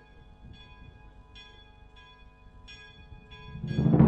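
Church bells ringing a funeral toll, several strikes each leaving a long, steady ring. Near the end, music swells in loudly over them.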